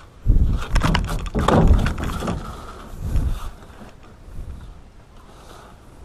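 Dull thumps and knocks on a ribbed metal boat floor as a largemouth bass is handled on it, loudest in the first two seconds with a further knock around three seconds in.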